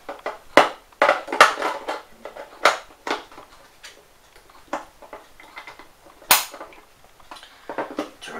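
Plastic clicks and knocks of a 9-volt battery being snapped onto its clip and pressed into a plastic EMF meter's battery compartment, with the battery cover being handled and the meter moved on a wooden table. A handful of separate sharp clicks, the sharpest about six seconds in.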